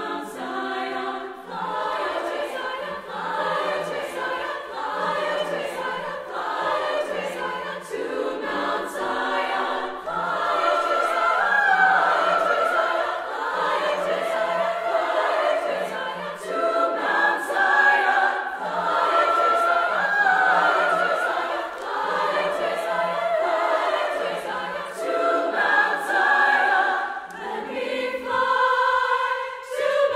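Women's choir singing in parts with piano accompaniment; a low note sounds about once a second beneath the voices. The voices swell louder twice in the middle.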